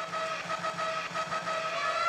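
Steady background noise of a crowded fight arena with a single held tone running under it.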